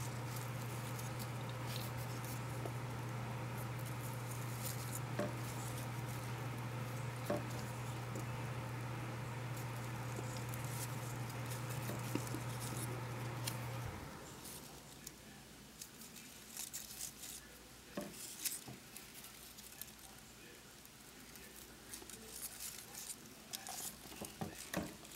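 Faint rustles and small clicks of ribbon loops being handled and threaded on a needle and thread, over a steady low hum that stops suddenly about fourteen seconds in.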